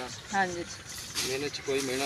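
Short, indistinct spoken utterances, with a brief rustle of leafy sweet potato vines being handled.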